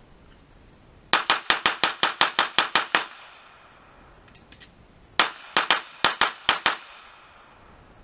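Glock 19 9mm pistol fired rapidly in a timed drill: about a dozen shots in quick succession, a pause of about two seconds with a few faint clicks, then about eight more shots.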